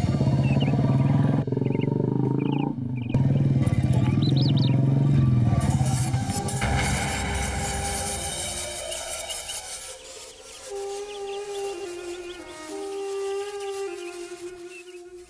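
Motorcycle engine running for about the first six seconds, then fading out. Background music with long held notes follows.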